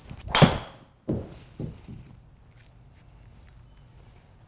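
A golf driver swung hard, with a rising whoosh on the downswing ending in a loud crack of the clubhead striking the ball about half a second in. Two softer thuds follow, about half a second apart.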